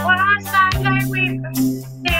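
A woman singing while strumming chords on an acoustic guitar, with one strum at the start and another about three quarters of a second in.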